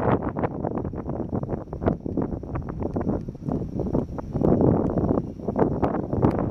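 Wind buffeting the microphone, a gusting noise that rises and falls unevenly, with many small crackles through it.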